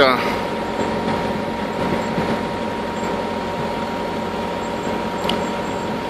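Steady drone of an idling diesel semi-truck engine, even in level, with a constant hum of fixed tones.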